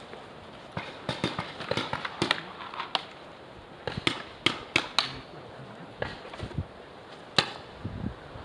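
Paintball markers firing across the field: scattered sharp pops at an irregular pace, several in quick succession in the first few seconds, a cluster about four to five seconds in, and one of the loudest about seven seconds in.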